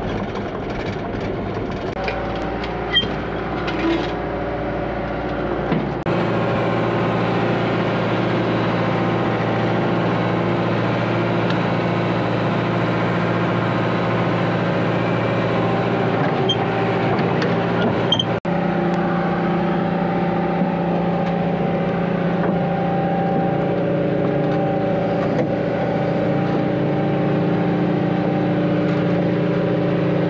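John Deere 120 excavator's diesel engine running steadily as the machine is tracked onto a lowboy trailer. Its sound changes character about six seconds in, with a few brief clicks before that.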